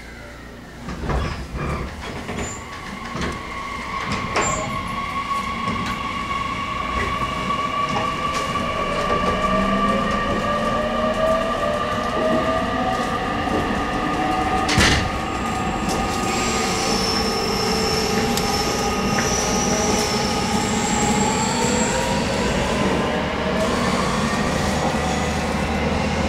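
813 series electric train pulling away and accelerating, heard from inside the car: a few knocks as it starts moving, then motor whine climbing steadily in pitch as it gathers speed, over growing wheel and rail rumble, with a sharp click about halfway through.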